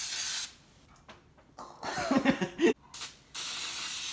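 Aerosol can of Pam cooking spray hissing as it greases loaf pans: the first spray stops about half a second in, and a second spray starts a little after three seconds in.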